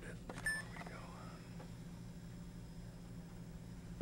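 A single short electronic beep about half a second in, just after a faint click, over a steady low electrical hum.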